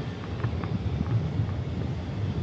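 Wind on the microphone outdoors: a steady low rumble and hiss with no clear event standing out.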